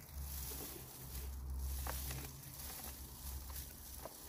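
Faint patter and rustle of soil and straw shaken from a lifted potato plant's roots into a plastic tub, over a low steady rumble.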